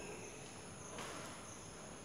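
Faint steady room noise with a thin high-pitched hiss, and a soft click about a second in.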